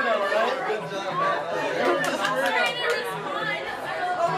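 Several people talking over one another at once: group chatter with no single voice standing out.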